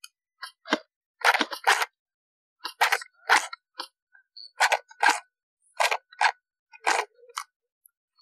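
Footsteps crunching on a dry, stony dirt trail: a walking rhythm of short gritty scuffs, about two steps a second.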